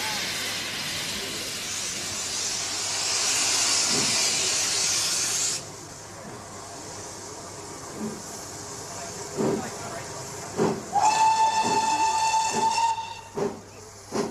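Steam hissing loudly from the standing Great Western Castle-class locomotive Clun Castle, cut off abruptly about five and a half seconds in. About eleven seconds in, its steam whistle sounds one steady note for about two seconds, among a few exhaust chuffs as it starts away.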